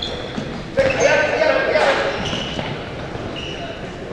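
Sneakers squeaking on a hardwood gym floor during indoor futsal play, several short high squeaks, with a player's shout about a second in. The hall echoes.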